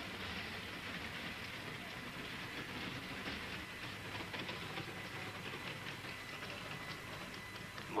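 Saturn V first stage's five F-1 engines heard from far off through a broadcast microphone: a steady crackling rumble as the rocket climbs.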